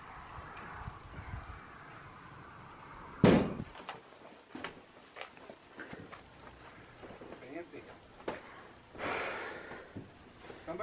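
A single loud bang about three seconds in, followed by faint scattered knocks and rustles.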